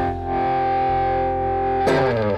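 Live blues-funk band music: an amplified guitar chord held and ringing through effects, then fresh notes struck just before the end.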